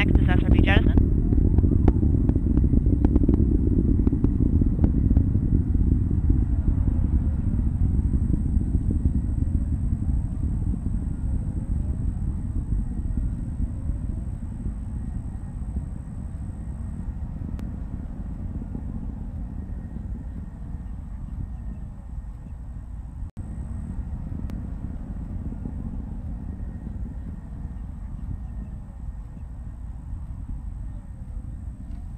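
Deep rumble of the Vulcan Centaur rocket's two BE-4 engines and solid rocket boosters in flight, fading slowly as it climbs away.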